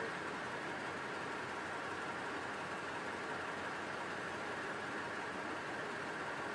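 Steady, even background noise with no distinct events: a constant low hiss and rumble of the recording surroundings.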